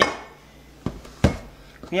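A metal slotted spatula knocks and clinks against the side of a stainless steel pot as it goes into a pile of seasoned meat chunks. The sharpest knock comes a little over a second in.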